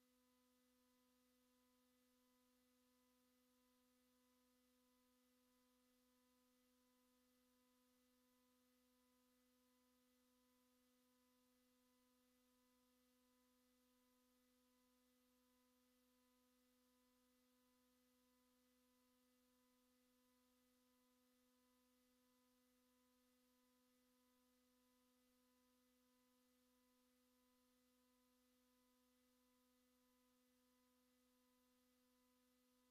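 Near silence: only a very faint, steady hum of a few thin tones over a faint hiss, one of them pulsing evenly.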